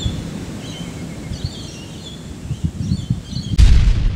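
Outdoor ambience of birds chirping over a low rumbling wind noise, then a single loud boom near the end that fades away over a second or two.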